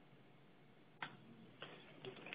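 Near silence: faint room tone with a single soft click about halfway through and a fainter one shortly after.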